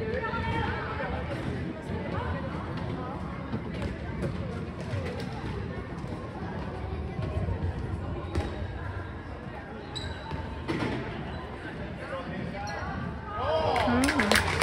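A handball bouncing repeatedly on an indoor court floor during play, with players' voices in the background.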